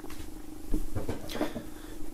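Faint handling noise of an open plastic CD jewel case being moved in the hands, with a few soft taps, over a low steady hum.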